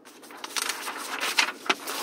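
Sheets of paper rustling and crackling as they are lifted and flipped over, with a few sharper crinkles.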